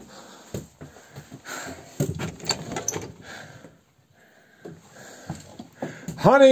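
Old wooden mountain-hut door being opened and gone through: a run of knocks and rattles, loudest about two to three seconds in.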